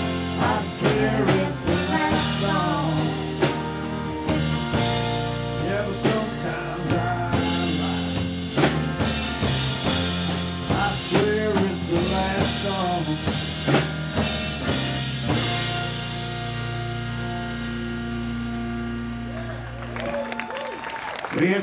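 Live rock band (electric guitars, bass and drum kit) playing an instrumental passage with a wavering lead line. About 15 seconds in the drums stop and the song ends on a held chord that rings out.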